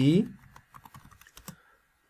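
Computer keyboard typing: about a dozen light key clicks in quick succession over roughly a second, stopping shortly before the end.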